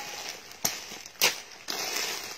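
Plastic clothing bags rustling and crinkling as they are handled, with two sharp snips of scissors cutting the plastic, about half a second apart. The crinkling grows louder near the end.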